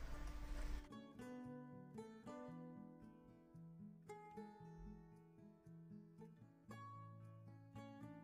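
Quiet instrumental background music of plucked acoustic guitar notes, coming in about a second in after a brief stretch of low noise.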